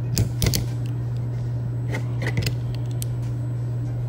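A few light metallic clicks as the chrome nested sockets of a Klein 7-in-1 nut driver are worked into its handle: two in the first half-second and a few more around two seconds in. A steady low hum runs underneath.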